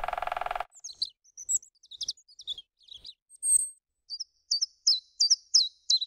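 A short buzz, then bird song: high chirps and quick downward-slurred whistles, ending in a faster run of notes.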